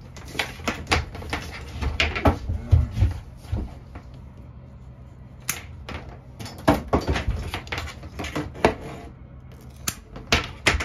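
Snips cutting away a fiber optic cable's outer plastic and metal sheathing, with the cable and tool knocking on a work table: a quick run of sharp clicks and snaps through the first three seconds or so, a lull, then more about six to nine seconds in.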